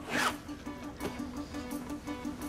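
A short rasping swish right at the start as a thick wad of banknotes is handled, then background music with a low, softly pulsing note.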